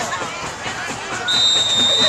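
Referee's whistle blown once near the end, a steady high tone lasting under a second, signalling the end of the play, over crowd chatter.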